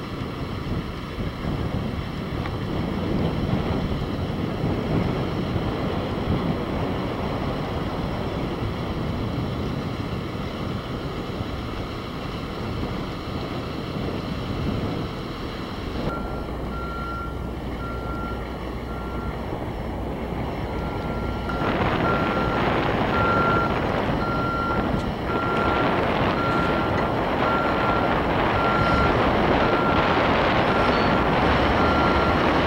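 Diesel engines of mobile cranes and site machinery running. About halfway through, a backup alarm starts beeping steadily, a little more than once a second, and the engines grow louder near the end.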